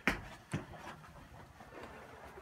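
Latch of a camper's wooden interior door clicking as the door is opened: a sharp click, then a softer second click about half a second later.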